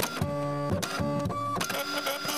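Electronic music breakdown: the heavy beat cuts out and leaves a quieter run of short buzzing synth tones that step from pitch to pitch, with a few clicks among them.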